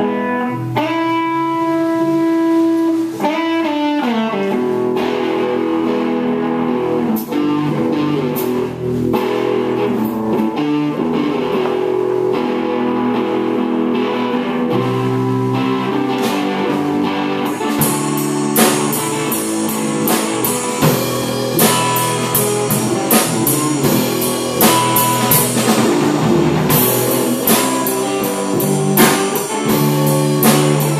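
Small live rock band playing: guitar and bass guitar hold slow sustained notes, with a pitch bend a few seconds in. The drum kit comes in with cymbal hits a little past halfway.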